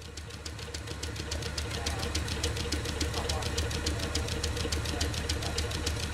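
Metal-spinning lathe running: a steady low hum with a constant tone above it and a rapid, even ticking, swelling in over the first second or so.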